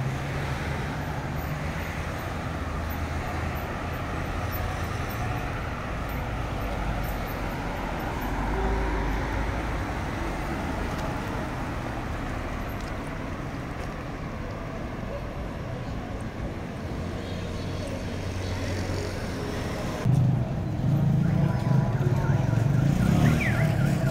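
City street traffic: cars driving past on the road, one passing close and louder about eight seconds in. Near the end the sound switches abruptly to a louder ambience with a low hum.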